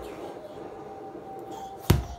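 A single sharp knock near the end, the loudest sound, as a toddler plays with a ball on a wooden floor. Before it there is only faint room noise with a thin steady tone.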